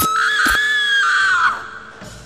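A woman's high-pitched scream, a horror jump-scare sound effect, held for about a second and a half before it drops in pitch and breaks off. Sharp hits sound at its start and again about half a second in.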